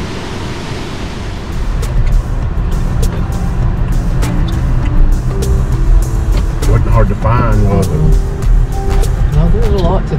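Water rushing over a low mill dam for the first second or so, then the steady low rumble of a car driving, heard from inside the cabin. Music plays under it, and a voice is heard briefly about seven seconds in and again near the end.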